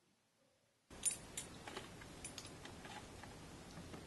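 Faint hiss with a scattering of small, sharp clicks, starting about a second in, the loudest click just after it begins.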